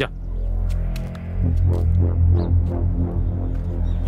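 Background film score: a deep, steady bass drone with faint sustained notes above it.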